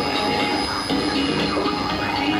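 An Arabic song received over shortwave and played through a radio receiver's speaker, its melody heard under steady static hiss.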